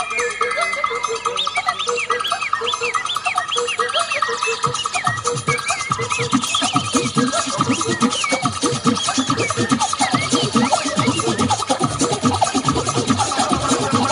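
Recorded dance music played over the stage sound system, with a fast, even pulse and chirping high notes; a heavy drum beat comes in about four and a half seconds in.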